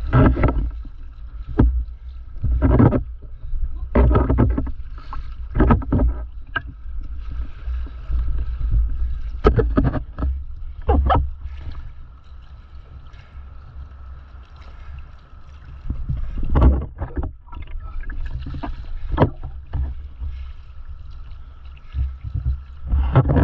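Water splashing and sloshing around a stand-up paddleboard being paddled out through broken surf, in irregular loud bursts over a steady low rumble, with a quieter stretch in the middle.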